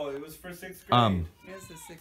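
A short, loud, meow-like call with a falling pitch about a second in, among softer voice sounds.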